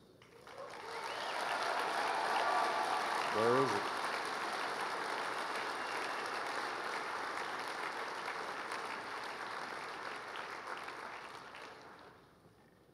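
Audience applauding, swelling over the first two seconds and then slowly dying away near the end. A single short voice cuts through about three and a half seconds in.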